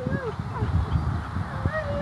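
A dog's repeated high-pitched yelps and whining cries, each call rising and falling in pitch, several a second, the excited vocalising of an Australian Cattle Dog running an agility course.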